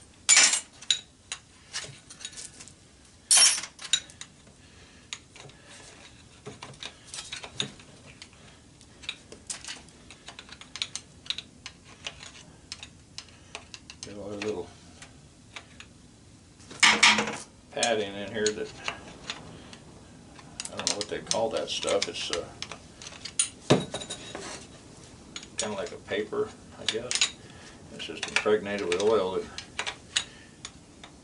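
Hand tools clinking, scraping and knocking against a cast aluminium electric-motor end bell while a stuck oil fill cap is pried and twisted. There are sharp metal clanks just after the start, at about three and a half seconds and at about seventeen seconds, and bouts of rattling scrapes through the second half.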